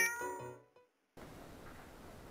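A single cat meow ends a short musical intro jingle, falling slightly in pitch over about half a second. After a brief gap of silence, faint room tone takes over.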